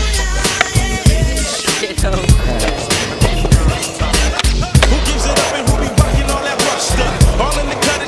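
Hip hop music with a heavy bass beat and rapped vocals. Mixed under it are skateboard sounds: hard wheels rolling on asphalt and the clack of the board.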